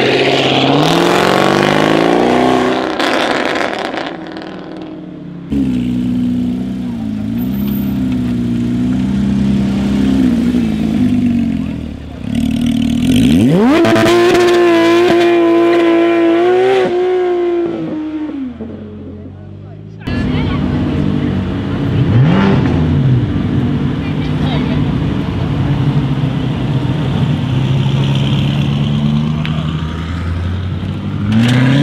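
Sports car engines accelerating one after another, with cuts between them. First a Jaguar F-Type R's supercharged V8 pulls away loudly and fades over the first few seconds. About twelve seconds in, a Porsche 911 GT3 RS's flat-six revs up in a fast rising sweep and holds a high, steady note for several seconds. Near the end, a widebody BMW M6 drives off at moderate revs.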